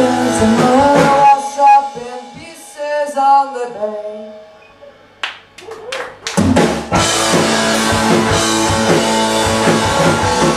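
Live rock band with electric guitars, drums and vocals playing. About a second in the band drops to a few held notes and a voice that fade almost to quiet. A few sharp drum hits follow, and the full band comes back in at about six seconds.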